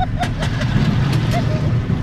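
Roller coaster car running along its track, a steady low rumble with wind buffeting the onboard microphone and a few sharp clicks.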